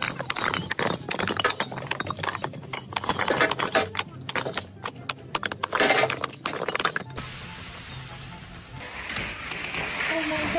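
Bricks knocking and clattering in a quick, uneven run of hard clinks, with background music beneath. About seven seconds in it cuts off to a steady hiss.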